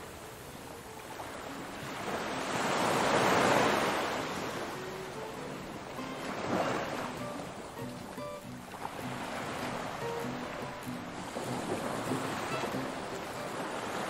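Small sea waves washing onto a pebble shore, swelling and ebbing every few seconds, the biggest surge about three seconds in. Faint background music plays underneath.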